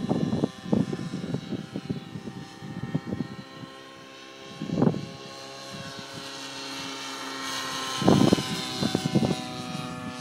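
Align T-Rex 700 radio-controlled helicopter flying overhead: a steady whine of its rotor with several pitch lines, the higher ones bending up and down near the end as it manoeuvres. Loud low rumbles come in about a second in, around the middle and near the end.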